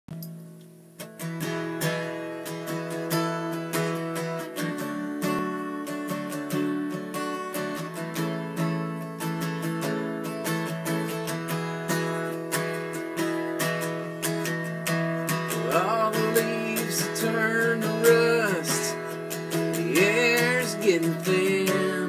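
Acoustic guitar strummed in a steady rhythm, starting about a second in, as the intro of a country song. Bending, sliding notes come in over the strumming in the last several seconds.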